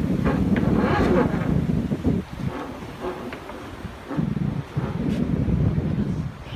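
Wind buffeting the microphone on a moving boat, a low rumble that dies down for about two seconds in the middle and then returns.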